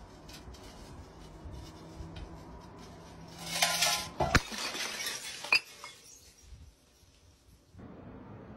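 Full glass bottle rolling and bumping down concrete steps: light clinks and rattles, then a loud clatter about three and a half seconds in with sharp knocks after it, before the sound dies away.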